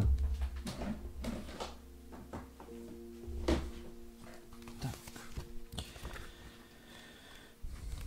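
Scattered soft knocks, clicks and handling noise as a booklet of notes is fetched and handled, over faint steady background music.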